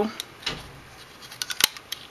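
A handheld craft window punch being worked on a strip of cardstock: a few small clicks of paper and punch being handled, then a sharp snap about a second and a half in as the punch cuts through.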